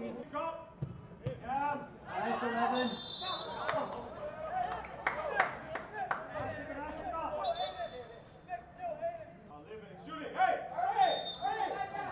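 Players' voices calling out across an open football pitch, with a few sharp knocks or claps about five to six seconds in.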